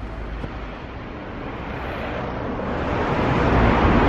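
Road traffic noise on a city street, growing louder through the second half as a vehicle comes closer.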